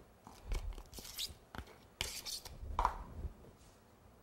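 A spatula scraping and tapping against a small plastic cup as it scoops buttercream, then smearing the icing onto a cake board: a series of short scrapes and clicks.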